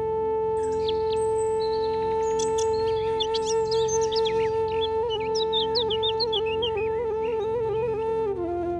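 Background flute music holding one long note, breaking into quick ornaments near the end, with birdsong chirping over it from about half a second in.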